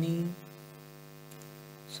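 A steady low hum made of several even, unchanging tones, running under a pause in the narration; a spoken word trails off just after the start.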